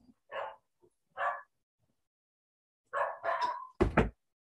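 A dog barking in short single barks, four or so spread through the seconds with two close together near the end, followed by a loud thump.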